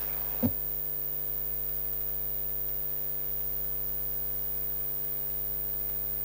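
Steady electrical mains hum with a ladder of overtones, unchanging in pitch and level. A brief soft blip comes about half a second in.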